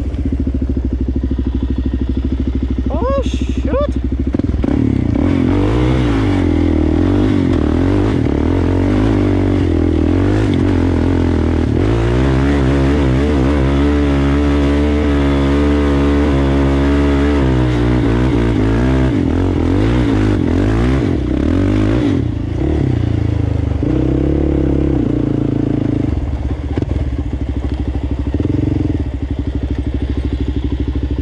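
Sport ATV engine running under throttle, heard from on board, its pitch rising and falling as the rider gets on and off the gas.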